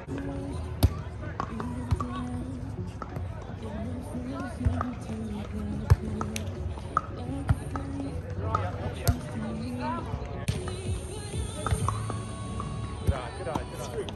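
Volleyball being struck by players' hands and forearms during a rally: a string of sharp slaps at irregular intervals, a second or two apart. Background music and voices run underneath.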